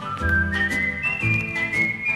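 Opening of a 1950s rock and roll record: a whistled melody climbing note by note to a high held tone, over bass, drums and guitar.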